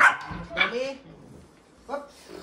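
Rottweiler puppy barking angrily at another puppy during a scuffle: two sharp barks within the first second.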